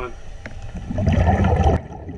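Scuba diver's exhaled bubbles rushing from the regulator underwater, a loud gurgling rush about a second long that cuts off suddenly near the end.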